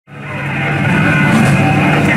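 Late model stock car engines running together in a steady, loud drone, fading in over the first half second.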